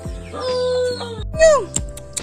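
A pitched call, held steady for under a second, then after a short break a louder, shorter call that falls in pitch, over background music.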